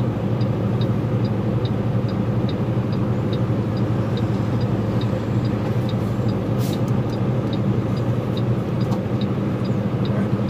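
Vehicle engine idling steadily from inside the cab, with a turn-signal relay ticking evenly about two and a half times a second. A short hiss about six and a half seconds in as a car passes.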